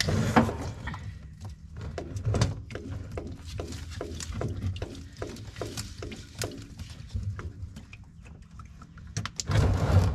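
Engine oil gulping out of the drain of a Yanmar VIO50-6 mini excavator's oil pan in pulses, about three a second, because the oil fill cap was left too tight and air has to gulp back in. There is a louder burst near the end.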